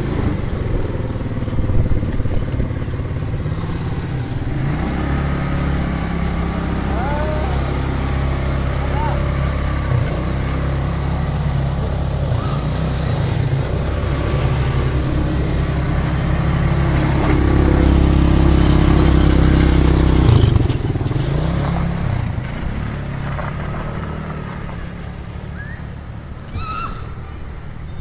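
Quad bike (ATV) engine running and being throttled up and down, a steady drone that grows to its loudest about two-thirds of the way through, then drops and fades near the end.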